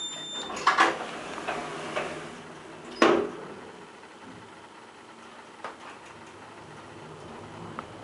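An elevator button beeps briefly, then the car's sliding doors run shut with a few knocks and close with a loud thud about three seconds in. After that it is quieter, with a couple of faint clicks as the ASEA traction car sets off downward.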